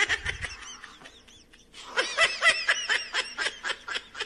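High-pitched rapid snickering laughter in two bouts, the second starting about two seconds in, with about six quick pulses a second.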